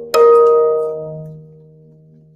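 Nylon-string classical guitar: a final chord strummed just after the start and left to ring, dying away over about a second and a half to end the song.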